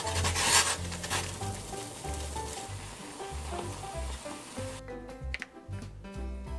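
Water boiling in a stainless steel saucepan as a block of dried instant noodles goes in, a loud bubbling hiss that is strongest about half a second in and cuts off suddenly near the end. Background music with a steady bass line plays throughout.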